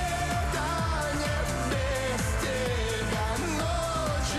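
Pop song with a singing voice holding a wavering melody over a steady, driving drum and bass beat.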